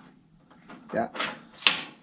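A single sharp metallic click near the end as parts of a brake pedal shaft assembly are fitted together by hand, with a short spoken 'yeah' just before it.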